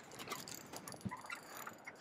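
Faint clicking of a spinning fishing reel while a hooked bass is played on a bent rod, over a low hiss of wind and choppy water.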